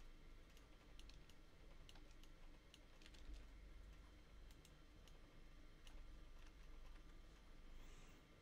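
Faint, scattered clicks of a computer keyboard and mouse at irregular intervals over near-silent room tone.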